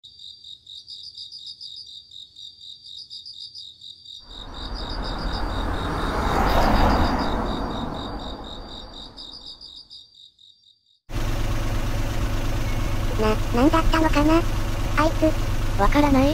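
Crickets chirping in a steady pulsing rhythm, with a rushing noise that swells to a peak and fades away in the middle. After a sudden cut near the end, the steady low drone of a car engine heard from inside the cabin takes over.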